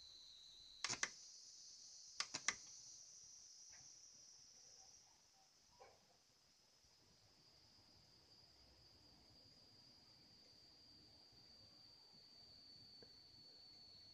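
Faint, steady high-pitched whine from a high-voltage charging circuit, switched on to charge a copper-plate capacitor. There is a single sharp click about a second in, and a quick pair of clicks about two and a half seconds in.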